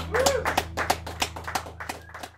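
Small audience clapping, the individual claps distinct and uneven, with one short voice call that rises and falls about a quarter second in. A steady low electrical hum runs underneath, and the whole fades out near the end.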